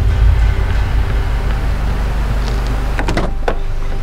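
Pickup truck door being opened, its latch clicking several times about three seconds in, over a steady low rumble.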